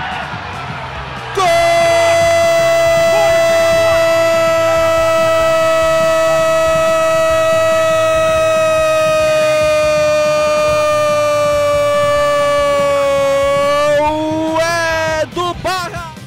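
A Brazilian football commentator's long, held goal cry ("Gooool"). It starts about a second and a half in and is held as one steady note for about twelve seconds, slowly sagging in pitch, then lifts slightly and breaks off near the end.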